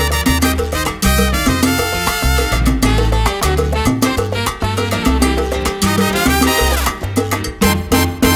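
Instrumental introduction of a salsa song played by a full band, with a steady driving beat and no singing. A falling slide comes about seven seconds in.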